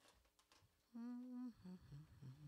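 A person humming with closed lips: one held note about half a second long near the middle, then a few short, lower hums.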